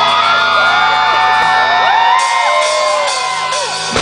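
Live rock band on stage with held tones ringing under many overlapping whoops and shouts that glide up and down in pitch. The low end drops away in the second half, and a sharp hit at the very end brings the full band in with drums.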